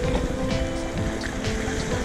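Background music with held notes over the wash of small waves breaking on rocks.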